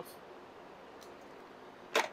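A single sharp click just before the end, over faint room noise.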